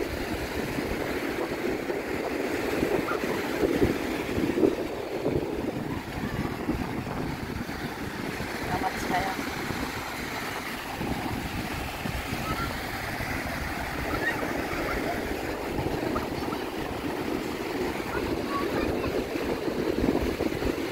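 Sea surf breaking and washing up a sandy beach in a steady wash, with wind buffeting the microphone in a low rumble.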